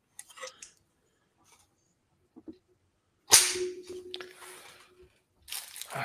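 A single sharp snap about three seconds in, followed by a faint steady tone that stops about two seconds later.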